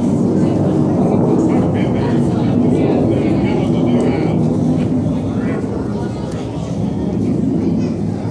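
Loud, steady low rumble of indoor arena ambience with faint, indistinct voices in the background.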